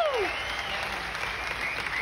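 Theatre audience applauding and cheering, with a whoop falling away at the very start.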